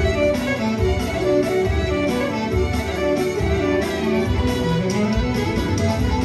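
Live Albanian folk dance music, a clarinet leading the melody over band accompaniment with a steady beat.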